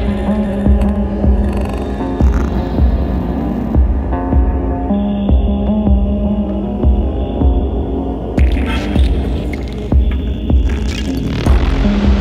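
Experimental industrial electronic music: a deep synth bass pulse throbbing a little under twice a second beneath a held low drone and shifting synth tones. A high thin tone comes in about five seconds in and stops about three seconds later.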